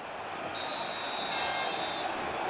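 Steady crowd noise from a packed basketball arena, with a thin, steady high whistle held over it from about half a second in.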